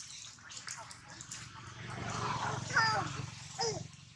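Long-tailed macaques calling: two short cries that fall steeply in pitch, in the second half, over a low background murmur.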